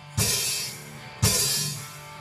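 Live rock band playing stop-time accents between sung lines: two hits on the drum kit with crashed cymbals about a second apart, each left ringing out.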